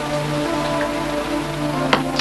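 Soft background film-score music holding sustained low chords over a steady hiss, with a small click near the end.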